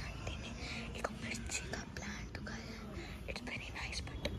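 Whispering by a person close to the microphone, with a few small clicks mixed in.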